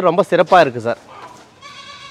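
A goat bleating once near the end: one high, steady call, after a man's voice.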